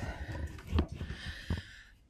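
A person breathing heavily close to the microphone, out of breath from the effort of getting up the stairs. Two dull thumps come, one just under a second in and one about a second and a half in.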